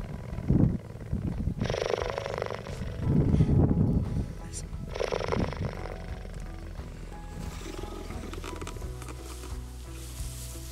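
Cheetah purring while being stroked, a deep rumbling purr that comes in pulses, over background music.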